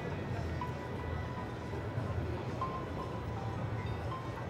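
Steady hubbub of a busy exhibition hall, with faint music in the mix.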